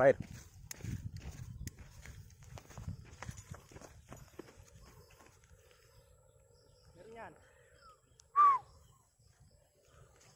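A kwitis skyrocket lit and launched: a rush of noise with scattered crackles as it goes, dying away over the next three seconds or so. Near the end, a short loud cry that falls in pitch.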